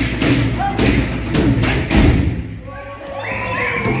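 Dancers' bare feet stamping in rhythm on a wooden hall floor. The thumps stop about two seconds in, and voices and a laugh follow near the end.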